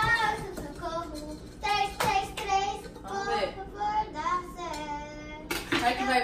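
A young girl singing wordlessly in a high voice, with sliding and held notes, and a few short knocks near the start.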